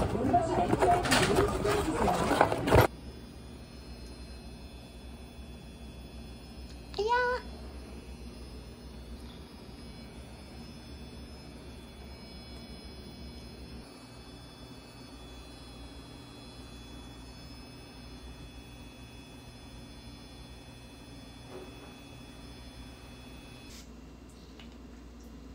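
Shop bustle and voices for the first few seconds, then a cut to the steady low hum of a washing machine running, over which a cat meows once, briefly, about seven seconds in.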